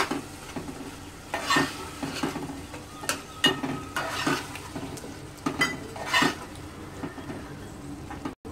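Steel spoon stirring yoghurt into a masala in an aluminium pot, with irregular metallic scrapes and clinks against the pot's side, over a low sizzle of the masala cooking.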